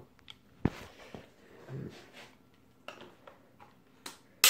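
Scattered handling clicks and knocks while an over-under shotgun is handled before being opened. There is one sharp click about half a second in, then a few faint clicks and rustles.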